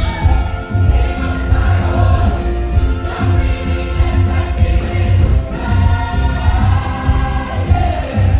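Musical theatre ensemble singing together, holding long notes over a band with a steady bass beat.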